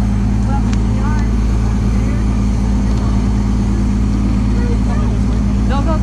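Shuttle bus engine idling close by: a steady low hum. Faint voices of people around it.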